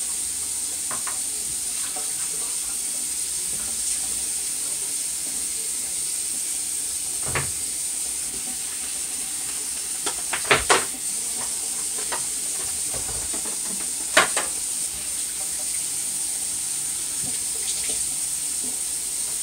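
Kitchen faucet running into the sink with a steady hiss while dishes are washed by hand. A few sharp clinks of dishes knock through it, a cluster of them just past halfway and one more a little later.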